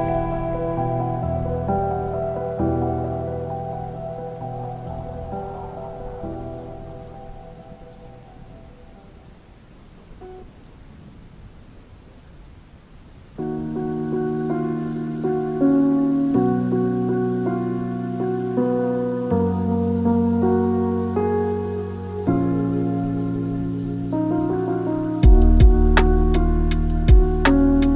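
Lofi music with soft rain ambience: one track's sustained chords fade out over about ten seconds, leaving faint rain sound. A new lofi track starts with mellow chords about thirteen seconds in, and a beat with drums comes in near the end.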